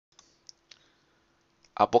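Three short, faint clicks in the first second over a faint steady hum, then a voice starts speaking in Spanish near the end.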